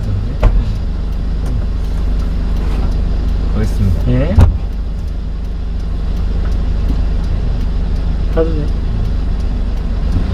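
A manual truck's engine idling steadily, heard from inside the cab, with a short click a little after halfway.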